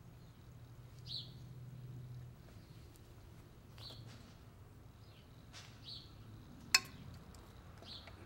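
A bird chirping now and then, short high chirps, over a faint low hum. About two-thirds through comes a single sharp click, the loudest sound, from the test-kit hose fittings being handled at the backflow preventer.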